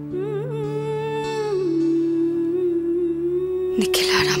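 Dramatic background score: a steady held drone under a wordless hummed melody that wavers with vibrato in the first second and a half, then a sudden noisy crash-like hit near the end.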